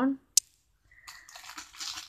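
A single sharp click, then plastic sweet wrappers rustling as packets are handled, growing louder toward the end.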